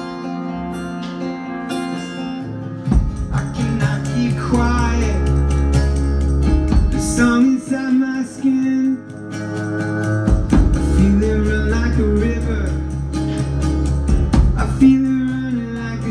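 Live acoustic band music: a steel-string acoustic guitar strummed while a man sings. A deep low part comes in about three seconds in, under the guitar and voice.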